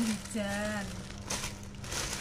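Black plastic carrier bag rustling and crinkling as hands rummage in it and handle a plastic-wrapped packet, with a couple of sharper crackles in the second half.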